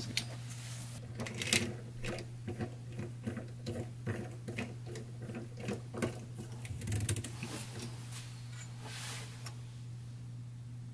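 A screwdriver fastening the screw into a faucet's cross handle: a run of small, irregular clicks and ticks over a steady low hum.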